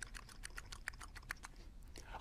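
A man imitating a rabbit nibbling with his mouth: a quick run of faint clicking, chewing sounds, several a second.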